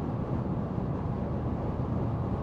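Steady road and engine noise of a moving car, heard inside the cabin.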